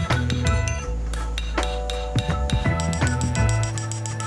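Background music with a steady bass line, over repeated hammer strikes on hot steel at an anvil, each a short metallic hit.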